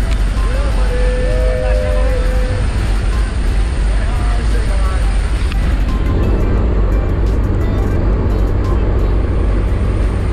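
Steady drone of a jump plane's engine and propeller, heard from inside the cabin during the climb. A few held vocal or musical notes sound in the first couple of seconds, and the sound thickens about six seconds in.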